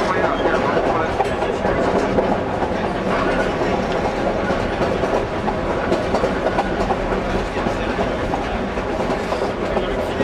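Narrow-gauge passenger train rolling steadily along the track, heard from an open-sided car: a continuous rumble of steel wheels on rail with quick, irregular clicking and clattering.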